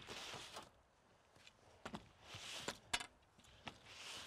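Snow being swept off solar panels with a long pole: faint swishes of sliding snow, with a few short knocks of the pole against the panels.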